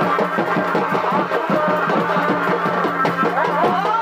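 Chhau dance music: drums beating a fast, even rhythm under a shehnai melody with sliding notes.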